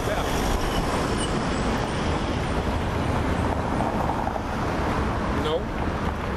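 Steady street traffic noise, an even rush of passing cars with no single event standing out.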